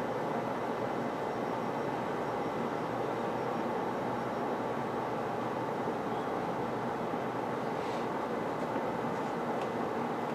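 Steady room noise with no speech: an even hiss at a constant level, with a few faint ticks near the end.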